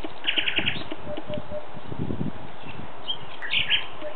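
Thrushes singing: a quick run of about six repeated high notes early on, then another short phrase about three and a half seconds in.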